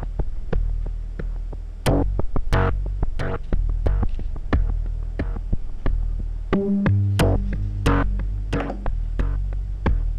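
Erica Synths DB-01 Bassline analog bass synthesizer playing a sequenced pattern of short, sharp-attacked notes over a steady deep bass, fed through a Strymon Timeline delay pedal in its ducking mode. The delay repeats are held down while the notes play, and the release setting is being turned.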